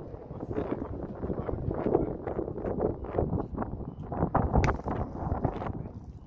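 Wind buffeting the microphone in an uneven low rumble, with one sharp crack about four and a half seconds in.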